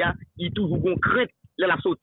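Only speech: a man talking in short phrases with brief pauses.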